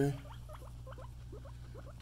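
Guinea pig giving a quick run of faint, short rising squeaks, several a second: an upset guinea pig complaining.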